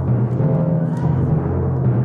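Orchestral timpani played in a sustained roll, loud and steady, its low pitch moving between notes about half a second and a second in.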